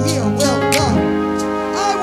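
Electric keyboard playing sustained worship chords, the chord changing about a second in, with a voice over it through the microphones.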